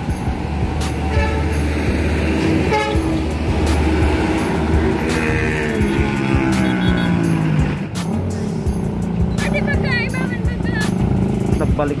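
Motor vehicle engines running at a roadside. About five seconds in, one engine's pitch falls steadily over roughly three seconds.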